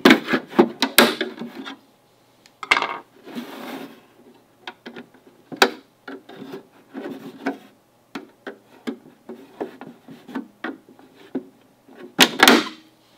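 Flathead screwdriver prying the plastic bottom grill off a 5G home-internet gateway: plastic scraping and rubbing with a string of irregular sharp clicks as the snap clips work loose.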